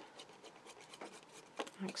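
Faint scratching and rubbing as a plastic glue bottle's nozzle is drawn along a strip of card-weight paper, with a few soft ticks as the paper is handled.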